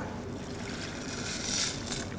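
Milk poured from a plastic measuring jug into a steel cooking pot. A soft trickle that starts about a second in and grows louder toward the end.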